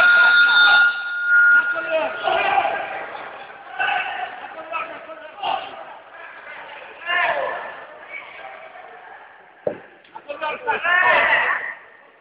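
Men's voices shouting instructions to a wrestler, with a steady high tone lasting about two seconds at the start.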